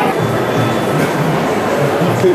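Steady rumbling hubbub of a busy indoor public space, with no clear voice standing out.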